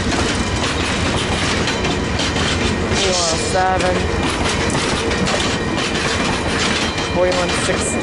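VIA Rail stainless-steel passenger cars rolling past with a steady rumble, their wheels clicking over the rail joints.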